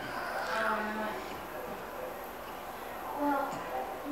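A long draw on a Genesis-style rebuildable-atomizer e-cigarette: a soft, steady hiss of breath through the device, broken by two brief low hums, one about a second in and one near the end, as the exhale of vapour begins.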